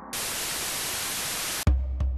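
A static hiss sound effect, steady for about a second and a half, then cut off suddenly. Near the end a music track comes in with heavy bass beats and sharp percussive clicks.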